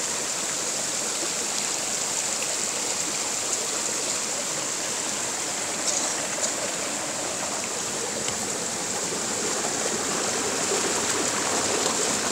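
Water rushing steadily along a small stream channel, with one light knock about halfway through.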